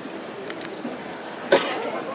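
A single loud cough close by, about one and a half seconds in, over the steady murmur of a large indoor crowd.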